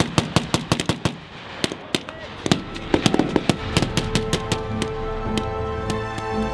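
Rifles firing blanks, single shots and rapid strings of shots with short gaps between. From about four seconds in, background music with held tones fades in under the shots.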